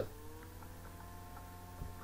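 Faint steady electrical hum with a few faint sustained tones above it, and a small soft bump near the end.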